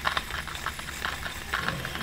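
Shimano Curado DC baitcasting reel being cranked as braided line winds onto its spool: a rapid, even run of light mechanical ticks over a faint low hum.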